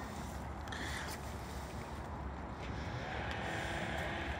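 Wind on the microphone: a steady low rumble, with a few faint brief rustles.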